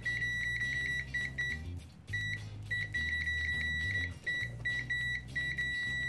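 ANENG AN8203 pocket multimeter's continuity beeper, a piezo speaker, sounding a steady high tone as the test probes touch. The tone cuts out several times when the probe contact breaks, with the longest gap a little before the middle. Fairly loud.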